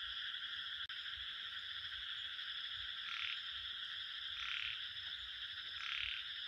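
A frog croaking three times, about a second and a half apart, over a steady, high-pitched chorus of insects.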